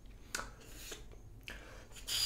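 Faint handling noises, a few soft clicks and some rubbing, as an oboe reed is held in the fingers and brought up to the lips.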